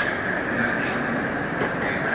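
Airport terminal hall ambience: a steady background din with a constant high whine over it.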